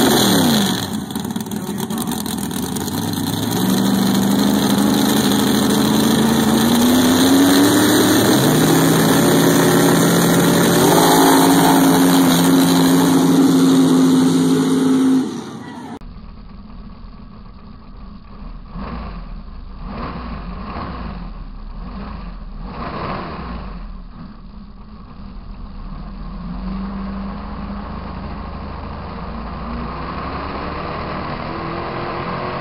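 Mud-racing car's V8 engine running hard through a mud pit, its pitch climbing in steps. About halfway through, the sound switches to a duller, muffled engine note heard from a camera mounted on the car, rising and falling in loudness as it churns through the mud.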